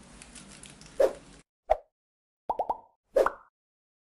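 A string of short pop sound effects: a single pop, another, a quick run of three close together, then one more, each with a brief pitched ring, over silence.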